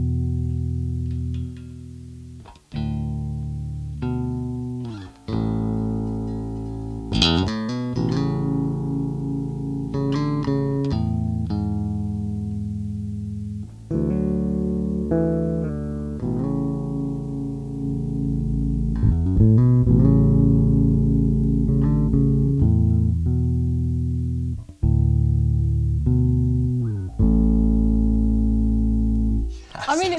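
Music Man Retro '70s StingRay electric bass with its single humbucker, played fingerstyle with a clean tone through a bass amp. Plucked low notes ring out in phrases with brief breaks, and a few notes slide in pitch.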